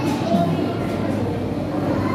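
Indoor arcade ambience: a steady low hum under background noise, with faint voices in the distance.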